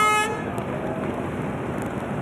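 Air horn sounding a race start: one steady tone that cuts off about a quarter second in, followed by a steady noisy wash.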